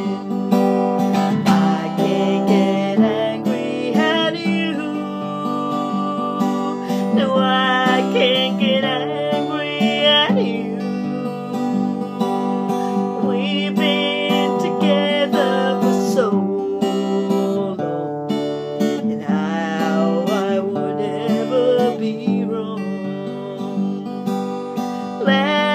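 Acoustic guitar strummed steadily, with a woman singing over it in phrases, her held notes wavering.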